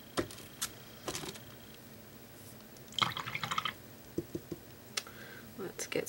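Faint scattered clicks and taps of a paintbrush and painting supplies being handled on the work table, with a short, rapid rattling patter about three seconds in.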